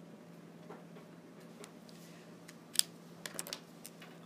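Felt-tip marker writing on paper in faint strokes, then a sharp click about three seconds in followed by a few lighter clicks as the hand comes away from the page, over a steady low hum.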